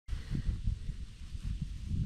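Uneven low rumble of wind buffeting the microphone, with a faint hiss above it.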